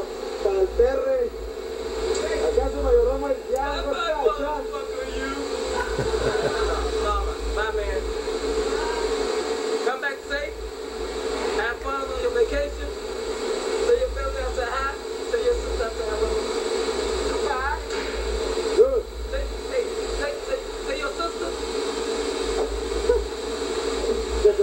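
Indistinct voices talking over a steady hum and low rumble of factory machinery.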